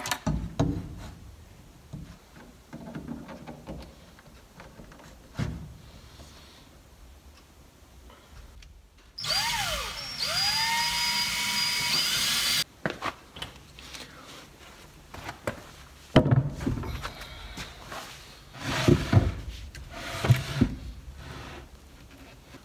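Cordless drill driving screws into a plywood mounting board, running twice about nine seconds in: a short burst, then a run of about two and a half seconds, its pitch rising as the motor spins up. Scattered knocks and handling thuds come before and after, most of them in the second half.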